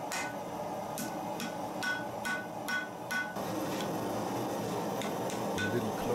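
Hand hammer striking a red-hot brass bar on a steel anvil, sharp ringing blows about two a second that turn softer about halfway through, as the bar is forged into a heart shape. Background music runs underneath.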